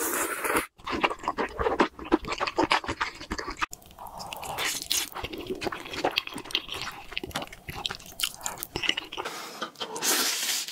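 Close-miked eating sounds, sped up: spicy instant noodles slurped and chewed wetly, with crunchy bites mixed in. The sound breaks off abruptly twice, about a second in and near the four-second mark, as one eater's clip gives way to the next.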